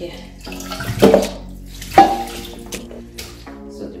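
Water splashing and running off a wet cloth bag of soaked corn pulp as it is lifted from a steel pot and set in a sink to drain, with two sharp knocks about a second apart.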